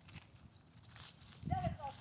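Faint footsteps on grass and dry leaves, then a high-pitched voice calling out about a second and a half in.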